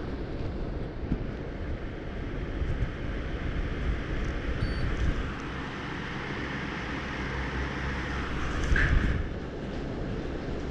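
GEPRC Cinelog 35 cinewhoop FPV drone flying, its ducted propellers and brushless motors buzzing steadily as heard from its own onboard camera. The sound rises and falls with throttle and swells loudest briefly just before the end.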